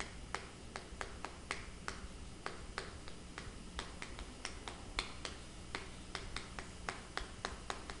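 Chalk writing on a chalkboard: many quick, irregular clicks and taps as each stroke hits the board, faint, over a low steady hum.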